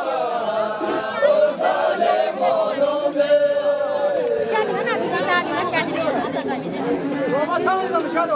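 A group of women singing unaccompanied, with a long held note that slides slowly down through the middle, and overlapping voices chattering around the singing.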